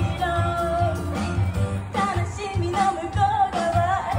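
A woman singing a pop song live into a handheld microphone over an instrumental backing track, her sung melody carried along in long held, wavering notes.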